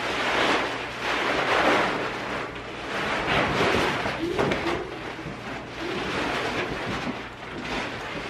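A large area rug being flipped, shaken out and dragged across a hardwood floor: a series of heavy swishing, rustling surges, one every second or so.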